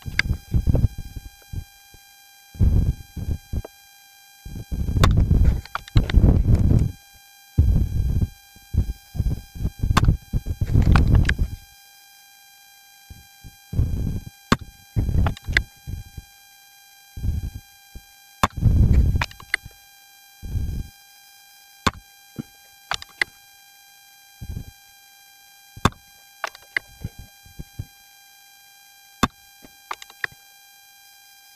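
Wind buffeting the microphone in gusts, heaviest in the first twenty seconds and dying away after, over a steady high electronic whine in the recording. A few sharp clicks stand out in the calmer second half.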